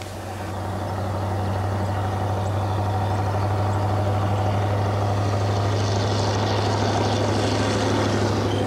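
A steady low mechanical hum with an even hiss over it. It fades in over the first second, then holds level throughout.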